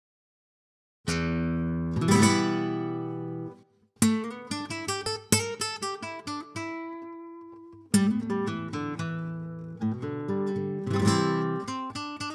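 Acoustic guitar opening a piece: a chord struck about a second in that rings and fades, then, after a brief break, a quick run of plucked notes, with more chords struck later on.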